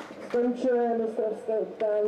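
A person's voice speaking, with no other sound standing out.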